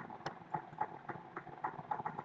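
A run of irregular light clicks, about three or four a second, over a faint steady hiss.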